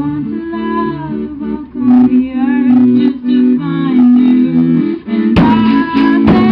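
Live band playing an instrumental passage: held accordion chords with guitar and light drumming. About five seconds in, the drums and a cymbal crash come in and the whole band plays louder.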